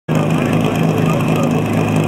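Portable fire-pump engine running steadily at constant speed, with voices over it.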